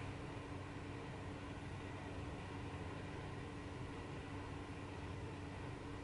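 Faint, steady hum and hiss of a room air conditioner running.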